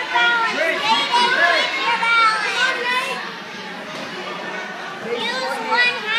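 Children's voices shouting and calling out over one another, loudest in the first three seconds, easing off, then rising again near the end.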